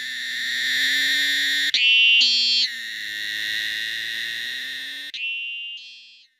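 Cicada singing: a very shrill, steady buzz. It breaks off briefly and jumps to a louder, higher phase for about a second early on, settles back, then shifts to a thinner, higher tone near the end and fades out.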